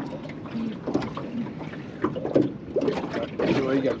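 Indistinct, low talking in short phrases between people in a small boat, louder toward the end, over a steady background hiss.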